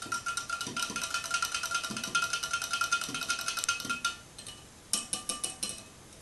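A wire whisk stirring fast in a tall glass jug of soap and washing-soda solution. Its wires clink rapidly against the glass, which rings with a steady tone. The stirring stops about four seconds in, and a short burst of clinking follows near the end.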